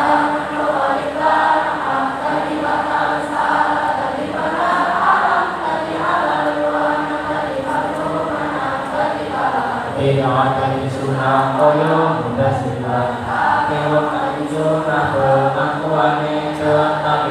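A large choir of students singing together, a chant-like melody of long held notes. The lower voices come in strongly about ten seconds in.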